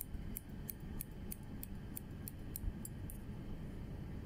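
Hairdressing scissors snipping into the ends of a section of hair, a quick regular run of sharp clicks about three a second that stops about three seconds in.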